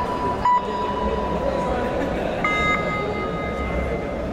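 A steady, held pitched tone with a short louder blip about half a second in fades out. Then, about two and a half seconds in, a higher steady tone begins and holds, over a continuous murmur of voices in a large hall.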